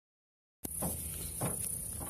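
Starts silent, then a click as the recording begins about half a second in, followed by a steady, high-pitched drone of insects with faint rustling underneath.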